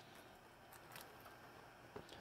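Near silence: room tone, with a couple of faint ticks about two-thirds of a second and one second in.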